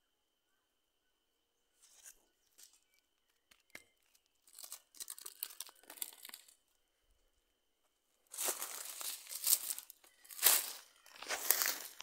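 Dry leaf litter crackling and rustling: a few faint crackles at first, then louder crinkly rustling, and loud rustling in three surges over the last four seconds.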